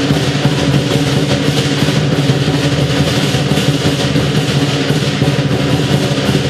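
Lion dance percussion ensemble: a large Chinese lion drum beaten in a fast, steady rhythm, with clashing cymbals and a gong.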